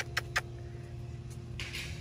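A steady low mechanical hum, with a few sharp clicks in the first half second and a brief hiss near the end.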